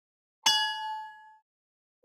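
A single bell ding, a notification-style sound effect struck once about half a second in, with a bright metallic ring that dies away over about a second.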